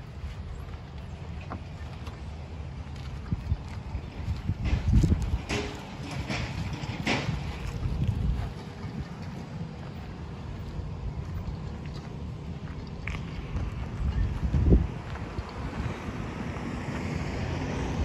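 Wind buffeting the microphone outdoors, a steady low rumble, with scattered scuffs and knocks as the camera is carried while walking.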